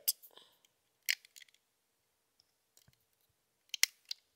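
A few short, sharp clicks of rubber loom bands being stretched and slipped over the plastic pegs of a Rainbow Loom by hand. They are sparse, with the loudest close pair near the end.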